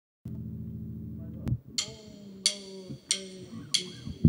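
A low steady hum for about a second, cut off by a click. Then four evenly spaced ringing percussive strokes, about two-thirds of a second apart, counting in the band's first song.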